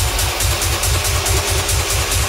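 Techno in a DJ mix: a low, rolling bass line pulsing quickly and steadily under a hiss of hi-hats, with no clear kick hits.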